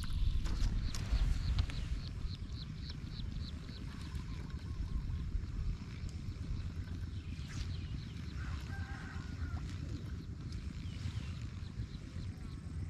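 Wind buffeting an action camera's microphone outdoors, a steady low rumble, with a quick run of faint high ticks about two seconds in.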